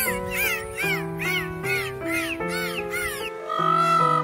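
Background keyboard music with a bird's short rising-and-falling calls repeated about two or three times a second, fitting peafowl calls. The calls stop a little over three seconds in, and a short steady higher tone follows.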